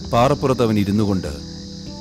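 Steady chirring of crickets in a forest ambience, under a low held music drone. A man's voice speaks for about a second near the start.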